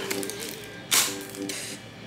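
Plastic packaging being cut and torn open around a glass, with a sharp rip about a second in, over soft background music.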